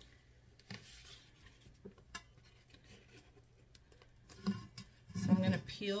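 Faint rustling and light ticks of hands handling adhesive tape and its paper backing, scattered and soft, with a spoken word near the end.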